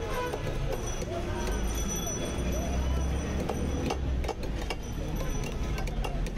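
Busy fish-market bustle: several voices talking over a steady low rumble, with a few sharp knocks from fish being cut with knife and boti blade.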